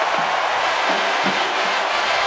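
Large stadium crowd cheering a home-team touchdown: a steady roar with no break.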